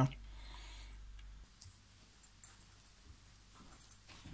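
Faint handling noise over quiet room tone: a few light, scattered clicks and knocks.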